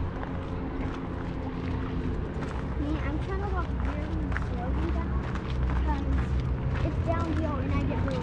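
Indistinct high-pitched talking that comes and goes, over scattered short crunches of footsteps on a dirt-and-rock trail and a steady low rumble.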